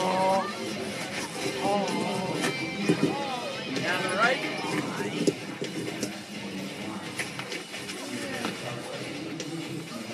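Background music and crowd voices, with a few faint crunches of broken beer-bottle glass under bare feet, picked up by a microphone laid down beside the glass.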